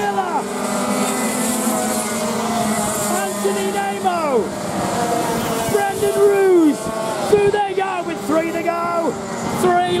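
Several racing kart engines running hard, their pitch repeatedly rising and falling as the karts accelerate and lift through the corners. Karts passing close to the microphone draw falling pitch sweeps, about four seconds in and again around six to seven seconds.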